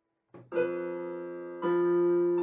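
Portable electronic keyboard played in a piano voice: after a moment of silence, a chord is struck about half a second in and rings on, fading slowly, then a louder chord is struck near the end.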